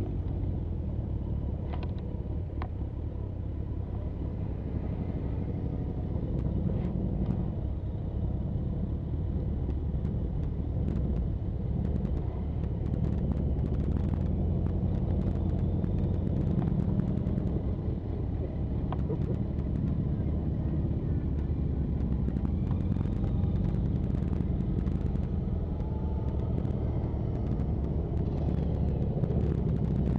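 Motorcycle engine running steadily at low speed as the bike is ridden through slow manoeuvres, heard from a helmet-mounted camera with a low rumble of wind on the microphone.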